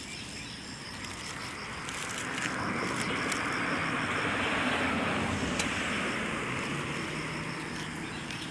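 A road vehicle passing by: a noisy rush that swells over the first few seconds, is loudest around the middle, and fades toward the end.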